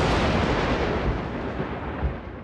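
A dense rumbling noise, heaviest in the low end, with no tune or voice in it. It holds steady, then slowly fades away: the closing sound effect of a TV show's end card.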